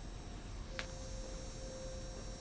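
Trenitalia ETR 500 Frecciarossa high-speed train moving slowly out of the station: a quiet, steady rumble with a low hum. A single click comes just under a second in, and a steady tone then sets in and holds.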